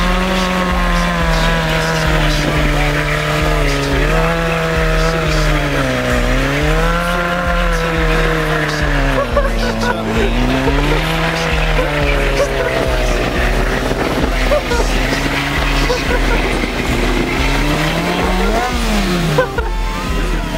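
A Honda CBR600F4's inline-four engine is held at high revs during a motorcycle rolling burnout, its pitch sagging and recovering several times, with tyre squeal from the spinning rear tyre. Near the end there is a quick rev blip up and back down.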